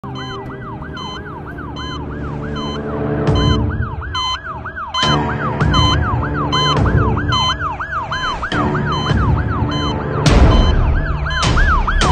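A siren wailing up and down in quick arches, about three a second, over a low droning music bed with regular high ticks. It starts suddenly and grows louder near the end.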